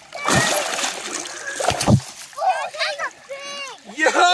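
A large hooked flathead catfish thrashing in shallow river water as it is grabbed by hand to be landed, with two heavy splashes in the first two seconds. Excited voices call out in the second half.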